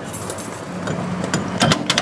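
Motorhome cab door being unlatched and opened: a low creak, then a quick cluster of sharp latch clicks near the end.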